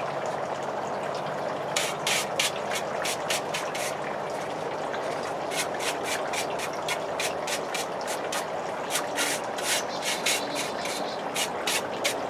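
A brush sweeping dust off a fake gas-fireplace log in quick scratchy strokes, about four or five a second. The strokes start about two seconds in, come in runs with a short pause, and a steady hiss runs underneath.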